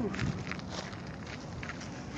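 Footsteps on a dirt hiking trail: a few scattered steps over outdoor background noise.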